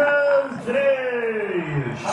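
A man's voice drawn out on long vowels rather than words, one note held briefly and then a long, slow fall in pitch.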